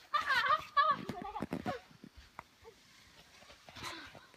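A child's high-pitched wordless cry in the first second, followed by a short run of quick crunching footsteps in snow.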